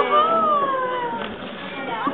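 A child's high-pitched voice in one long drawn-out call that slides down in pitch and fades out after about a second.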